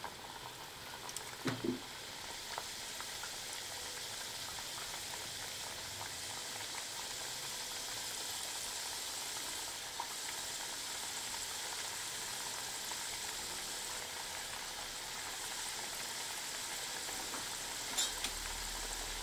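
Chakli spirals deep-frying in hot oil in a kadhai: a steady fine sizzle and bubbling from a freshly added batch that is not yet crisp. A light knock sounds about a second and a half in as pieces are slipped in.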